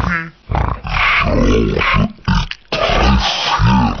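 A cartoon pig's snort slowed right down, so that it comes out as a deep, drawn-out grunt, in a few long stretches with short breaks.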